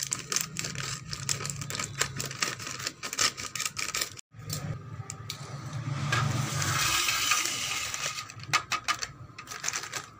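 Metallized plastic snack packet crinkling and crackling as it is handled, with a denser stretch of rustling from about five seconds in, when a hand presses and rubs across it.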